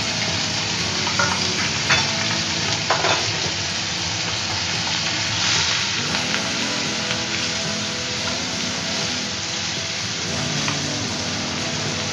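Tomato pieces, onion paste and whole spices sizzling steadily in hot mustard oil in a nonstick wok, stirred with a spatula that scrapes and taps the pan now and then.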